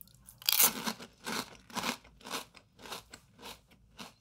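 Fortune cookie being bitten and chewed: a run of crisp crunches about two a second, loudest at the first bite and growing fainter.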